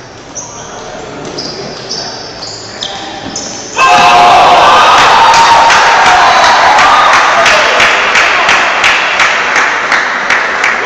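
Table tennis rally: the celluloid ball pings off the bats and table about twice a second. About four seconds in, the rally ends and loud shouting and clapping from the spectators break out, fading slowly.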